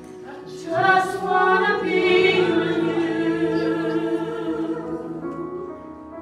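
Worship music with group singing: voices enter loudly about a second in, hold long notes over the accompaniment, and fade near the end.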